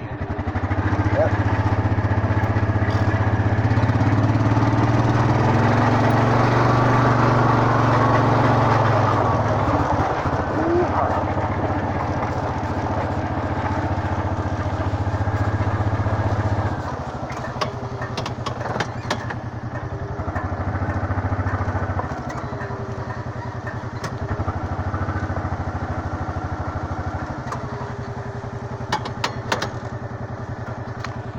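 A motor vehicle engine running, louder and working harder for the first half, then dropping back to a lower, steadier run about halfway through.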